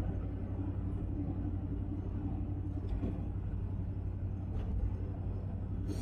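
A car driving at a steady speed: an even, low rumble of engine and tyres on the road.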